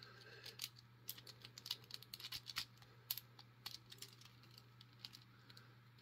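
Faint, irregular small metallic clicks and scratches of a thin tensioner and pick worked in the keyway of a small TSA luggage padlock.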